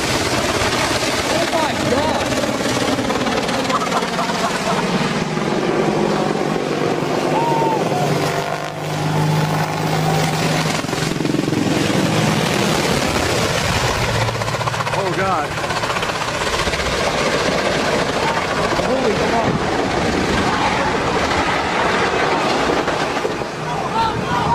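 Military attack helicopter (AH-64 Apache type) flying low overhead, its rotor and turbine noise steady and loud, with people's voices heard over it now and then.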